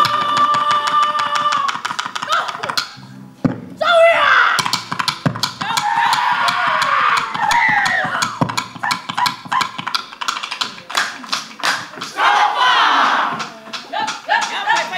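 A Samoan group's seated action song: one long held sung call opens it, then from about four seconds in come rapid hand claps and slaps mixed with group shouts and singing.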